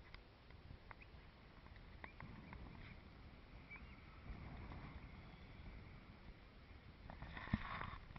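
Faint wind on an action camera's microphone, a low steady rumble, with a few light clicks scattered through it; a louder patch of sound comes in near the end.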